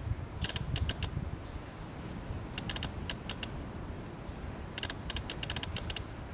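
Wind rumbling on the microphone, with three short clusters of light, sharp clicks.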